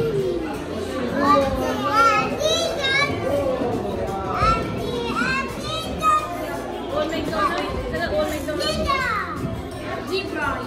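Several young children's voices talking and calling out over one another in a busy play room, with adults talking underneath. A short sharp click comes right at the start.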